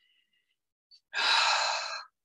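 A person's loud, breathy breath, starting about a second in and lasting about a second.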